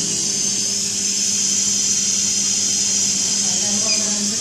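Steady hiss of gas flowing from a CareFusion Infant Flow SiPAP driver through its patient circuit during setup and calibration. A steady low hum runs underneath.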